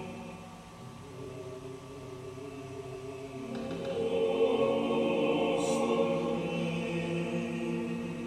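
A choir singing slow, sustained chant-like chords. The sound dips just after the start, then swells to its loudest around the middle.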